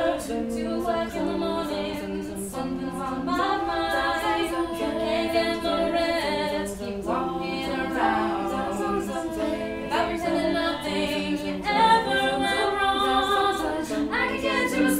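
Women's a cappella group singing in close harmony: several voices holding sustained chords that change every second or so, with no instruments.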